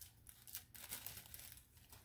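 A few faint crinkles of thin plastic wrapping being pulled off a small potted plant.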